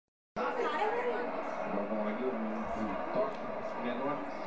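Several voices talking over one another in unintelligible chatter, beginning abruptly about a third of a second in.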